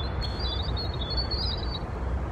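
European robin singing a high, thin phrase of quick, varied warbled notes, over a steady low background rumble.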